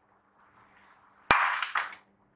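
A plate set down on a kitchen countertop with one sharp clack about a second in, followed by a short scrape as it settles.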